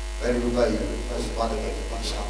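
A man's voice through a handheld microphone and sound system, starting about a quarter second in, over a steady low electrical hum from the amplification.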